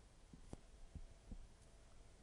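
Near silence: room tone with a few faint, soft low thumps spread through the two seconds.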